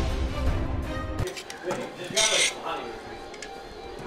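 Background music with a heavy bass cuts off about a second in. Then metal spatulas scrape in a large wok of fried rice, with one sharp scrape about two seconds in, under faint voices.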